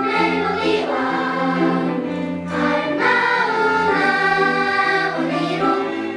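Children's choir singing a Korean children's song, with violins and cello accompanying underneath. The voices hold notes that change about every half second to a second, over a sustained low string line.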